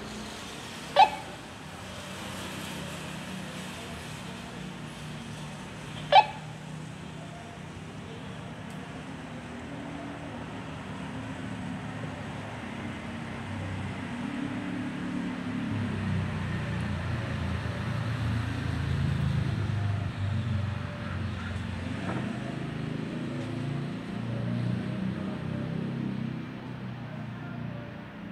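A vehicle engine running close by, a low rumble that grows louder through the second half. Two short, sharp, loud chirp-like sounds come about one second in and again about six seconds in.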